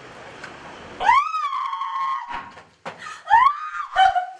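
A person screaming twice: a long, high-pitched scream that shoots up and holds about a second in, then a shorter one near the end.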